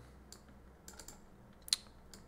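A few faint, scattered computer-keyboard clicks, the sharpest one a little before the end.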